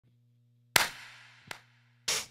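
Two sharp hits about three-quarters of a second apart, the first louder and trailing off, over a low steady hum.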